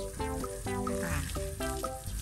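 Background music of short melodic notes over the steady hiss of a garden hose spraying water onto an elephant.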